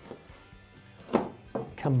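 Quiet kitchen sounds with one sharp knock a little past a second in, from cooking work at the pot and cutting board as sliced mushrooms go into the soup.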